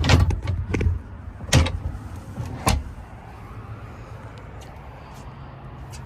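Four or five hollow knocks and thuds in the first three seconds as feet step across a pontoon boat's deck, then only a faint steady background noise.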